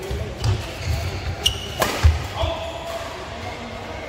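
Badminton doubles rally on an indoor court: a couple of sharp racket strikes on the shuttlecock, players' feet thudding on the court mat, and short shoe squeaks, with voices in the hall. The rally ends about halfway through.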